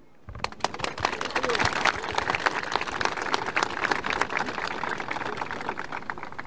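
Crowd applauding, with dense, irregular clapping that starts just after the speaker's closing demand and dies away near the end, with a few voices mixed in.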